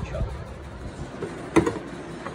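A single sharp knock with a brief ring about one and a half seconds in, over a low rumble.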